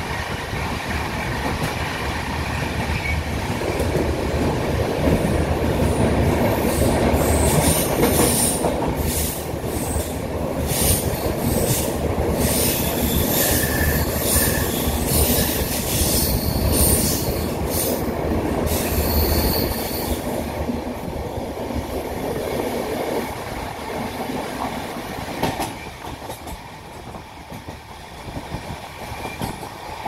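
Passenger train rolling on the rails at night with a steady low rumble of wheels on track. From about five seconds in, a loud high metallic squeal and clicking come from the wheels. They die away after about twenty seconds, and the rumble grows quieter near the end.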